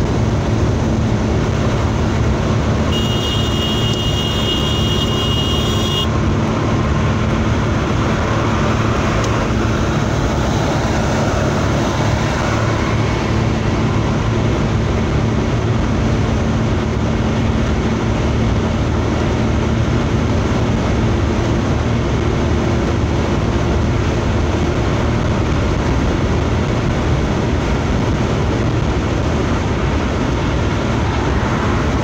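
Steady road and engine noise inside a car's cabin while driving at motorway speed. A high thin tone sounds for about three seconds shortly after the start.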